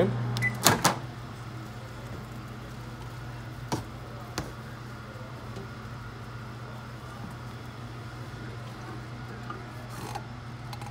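Microwave oven being stopped and its door opened: a short beep and sharp latch clicks in the first second, then two more knocks around four seconds in, over a steady low hum.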